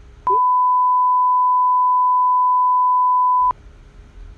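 Censor bleep: one steady high-pitched beep lasting about three seconds, with all other sound muted beneath it.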